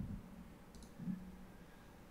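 Faint computer mouse clicks: a quick double click a little under a second in, with a short low hum about a second in.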